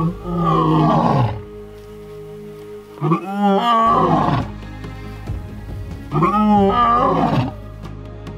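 Male lion roaring: three long roars about three seconds apart, each falling in pitch, with music playing underneath.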